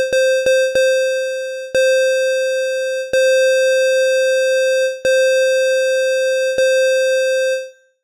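Phasemaker FM synth app playing a single-operator square-wave tone at one fixed pitch, retriggered about seven times. The first notes are short, then the notes hold steady for one to two seconds each as the envelope's sustain is raised, and the last note fades out near the end.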